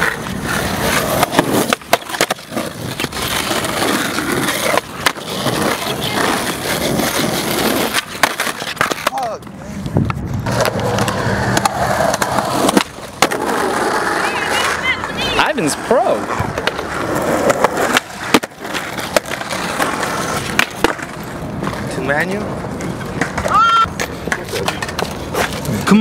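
Skateboard wheels rolling over rough asphalt and concrete, broken by many sharp clacks of the board popping and landing. Voices come through in places.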